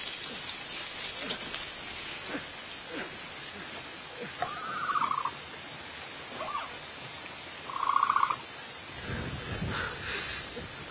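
Heavy rain falling steadily, with two short warbling hoots from the Dilophosaurus, a film creature sound: one about halfway through and a louder one about three seconds later. A low rumble sets in near the end.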